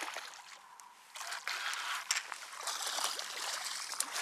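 A small redfish splashing and thrashing in shallow water as it is reeled in to the bank. The splashing gets louder and choppier from about a second in.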